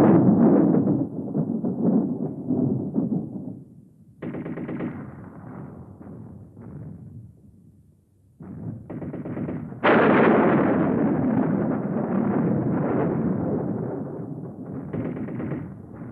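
Audience applause. It comes in several rattling spells that start abruptly and die away, with the loudest swelling about ten seconds in.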